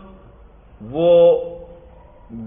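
A man's voice speaking: a pause, then one drawn-out word about a second in. There is a faint steady hum under it.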